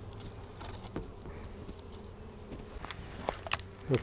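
Honey bees buzzing over an open hive, a steady hum, with a few light clicks about a second in and near the end.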